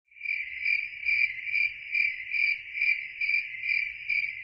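Cricket chirping: one steady high trill that pulses about two and a half times a second.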